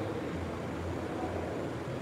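Steady low hum with a faint even hiss: background room noise, with no distinct event.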